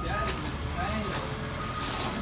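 Reversing alarm of heavy yard machinery beeping, one steady high tone repeating about once a second, over the low running of its engine.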